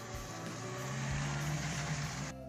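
Lada Niva 4x4 driving past on a rutted dirt track, its engine note growing louder through the second half, with tyre noise on the dirt.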